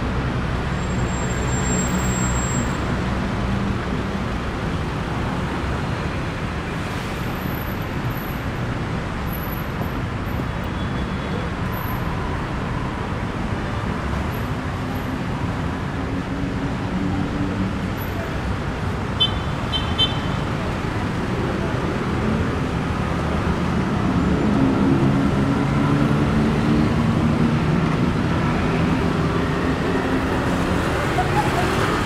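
Steady traffic on a busy city road, cars and motorbikes running past, swelling louder about three-quarters of the way through. A few short high beeps sound briefly about two-thirds of the way through.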